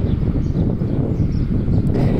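Wind on the phone's microphone: a steady, loud low rumble with nothing else clear above it.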